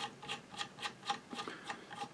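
Faint, quick, even clicking, about four to five clicks a second, from the head of a 1917 Singer 66 sewing machine as its presser bar spring is being loosened.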